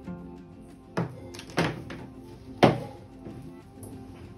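Three sharp thunks within about two seconds, the last the loudest, as the pet dryer's power cord and plug are handled, over steady background music.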